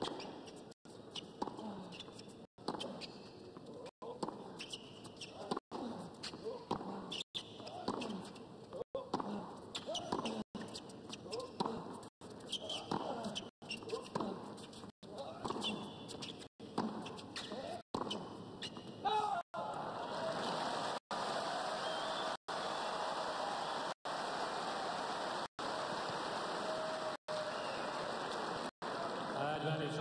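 Tennis rally: ball strikes and bounces over a murmuring stadium crowd. About two-thirds of the way in, steady crowd applause takes over. The sound cuts out for an instant roughly every second.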